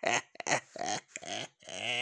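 A man laughing in short bursts.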